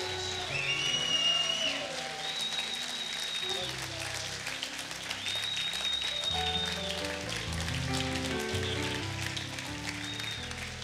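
Congregation applauding over soft music with sustained chords, with voices calling out among the clapping.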